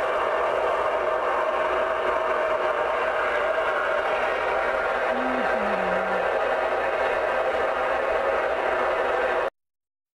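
Galaxy DX-959 CB radio receiving on channel 19, its speaker giving a steady loud static hiss, with a brief faint falling tone about five seconds in. The static cuts off suddenly near the end.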